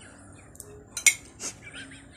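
Metal spoon clinking against a plate, a sharp clink about a second in and a softer one just after.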